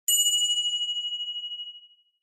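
Notification-bell 'ding' sound effect: a single bright bell strike that rings on and fades away over nearly two seconds.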